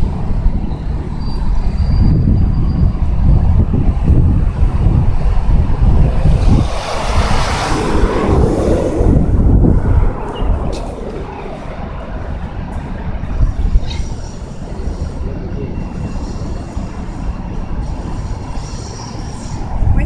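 Wind buffeting the phone's microphone, a rough, heavy low rumble. About six seconds in a louder rushing noise swells and fades, and after about ten seconds the rumble is quieter.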